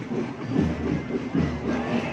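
Parade music with a steady, repeating drumbeat, over the noise of a street crowd.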